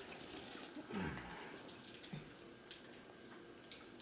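Faint sipping and swallowing of soda from an aluminium can, with a short low sound falling in pitch about a second in and a few small clicks.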